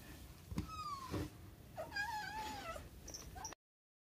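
Brown-tabby-and-white kitten meowing in protest at being picked up for a vet trip: a short call falling in pitch about a second in, then a longer wavering meow.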